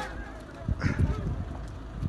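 A marching troop's feet stamping on pavement in a quick cluster about a second in, right after a drill command, with a brief shout over the stamps.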